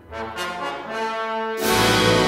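Symphony orchestra playing film-score music: a quiet moment, then held notes building, and a sudden loud full-orchestra entry about one and a half seconds in.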